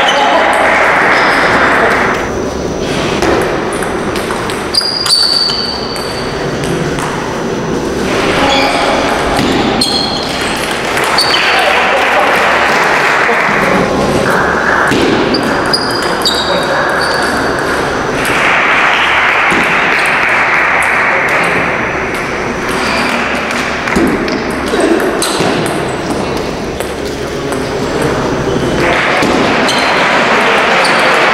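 Table tennis ball clicking back and forth off bats and the table in several short rallies, with voices and hall noise around them.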